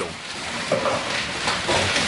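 Steady hissing background noise of a pig barn, with a brief faint voice fragment about three-quarters of a second in.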